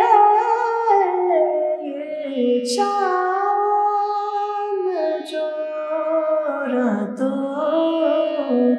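A woman singing a ghazal in light-classical Hindustani style, holding long notes and sliding between them with small ornamental glides, over a steady drone.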